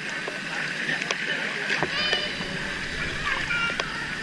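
Swimming-pool water splashing and lapping at the surface as children swim close by, heard from right at the waterline: a steady wash of water with small splashes, and faint voices in the background.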